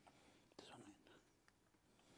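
Near silence: room tone, with a brief faint whispered or murmured voice off the microphone about half a second in.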